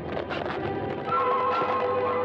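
Donald Duck's angry, rattling squawk over orchestral cartoon music, with the squawk giving way to held music notes about a second in.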